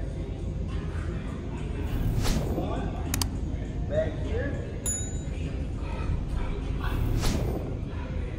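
Steady low room rumble with indistinct voices under it. About three seconds in there is a sharp click, and about five seconds in a short high chime: the sound effect of an on-screen subscribe button.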